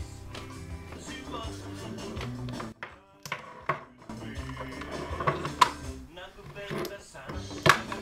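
Recorded music playing from a Denon DN-500CB CD player through an active monitor speaker. It drops out briefly about three seconds in, and several sharp knocks from equipment being handled come through, the loudest near the end.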